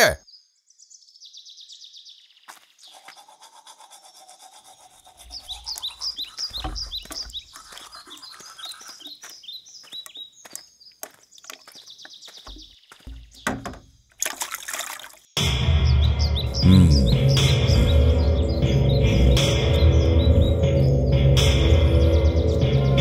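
Birds chirping repeatedly in the background, with a few soft low thuds. About fifteen seconds in, after a brief burst of noise, loud film score music with heavy bass comes in suddenly and carries on.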